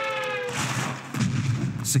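Title sound effects: a slowly falling whistle-like tone that stops about half a second in, followed by a short rushing noise and then a low boom.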